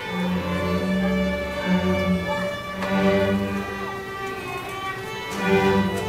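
Student string orchestra of violins, cellos and double basses playing, with the melody carried over sustained low bass notes.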